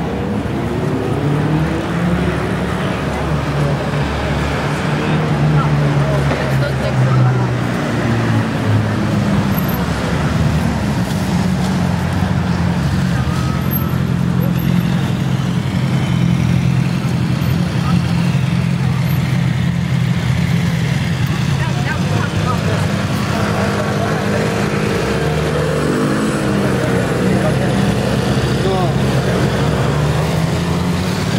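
A motor vehicle's engine running steadily close by, its low hum shifting in pitch a few times, over street traffic noise, with people talking.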